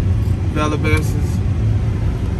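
A car's interior rumble: a steady, low drone heard inside the cabin, most likely the engine idling while the car sits still. A man's voice says a couple of words over it partway through.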